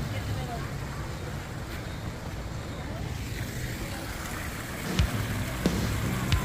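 Steady low rumble of wind on the phone microphone, with faint voices near the end.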